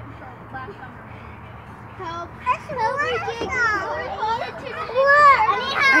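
Young children's high-pitched voices calling out at play, gliding up and down in pitch; they start about two seconds in after a quieter stretch and grow louder toward the end.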